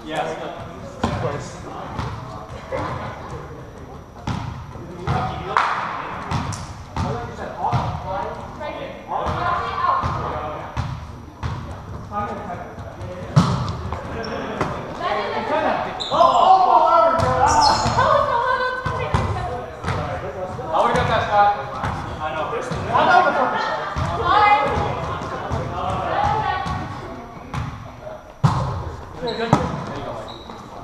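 Volleyball being played in an echoing gymnasium: repeated short thuds of the ball being struck and hitting the wooden floor, with players' voices and calls in the hall, loudest a little past halfway.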